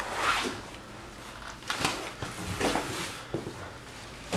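A few brief, soft rustles and scuffs of people moving in a small room.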